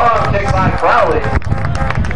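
Shouting voices of players and people on the sideline of a football field, with one rising-and-falling shout about a second in, over a low rumble.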